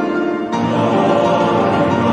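Classical choral music: a choir singing held chords, moving to a new chord about half a second in.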